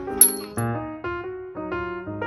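Gentle piano music playing a slow run of notes and chords. About a quarter-second in, a single sharp, bright clink rings out: a mallet striking a toy xylophone.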